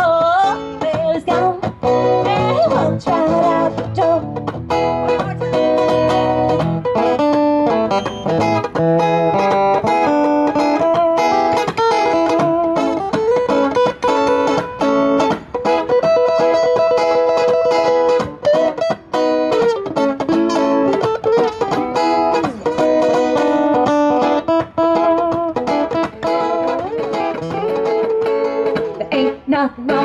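Two acoustic guitars played together in an instrumental passage of a country song, with steady picked and strummed notes.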